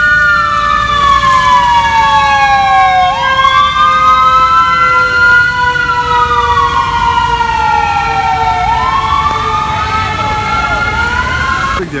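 Ambulance siren on a slow wail, loud and close. Its pitch sweeps down and back up about every six seconds, with a steadier tone held underneath.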